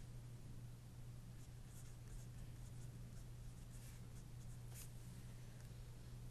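Faint scratching of a pencil writing on paper, a few short strokes, over a steady low electrical hum.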